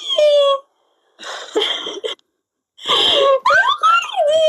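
People laughing and squealing over a live-stream video call, heard through the stream's compressed audio. The sound cuts out to dead silence twice, once about a second in and again past the two-second mark.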